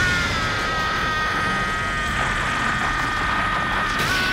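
Anime energy-aura power-up sound effect for a transformation: a steady rumble with a high, held whine on top, starting suddenly.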